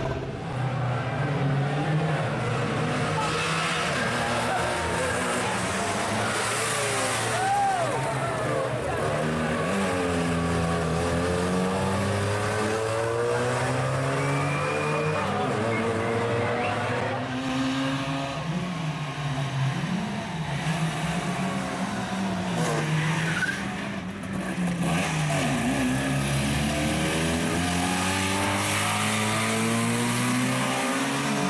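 Trabant P60 rally car's two-stroke two-cylinder engine driven hard, its pitch climbing and dropping again and again as it accelerates and shifts gear.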